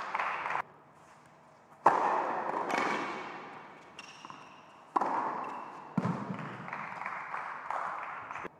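Tennis ball being struck by rackets during a rally on an indoor court, four sharp hits about one to three seconds apart, each followed by a long echo. A short squeak comes about four seconds in.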